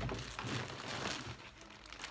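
Soft, irregular crinkling of a plastic-wrapped package being handled.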